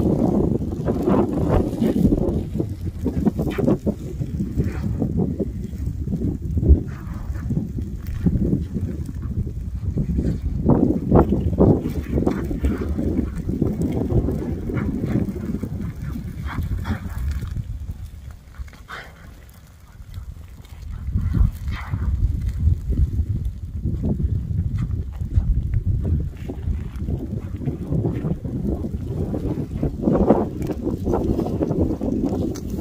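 Advancing lava flow front crackling and popping as its glowing crust breaks up and the grass along its edge burns, over a low rumbling noise. The crackles are irregular, with a brief lull a little past halfway.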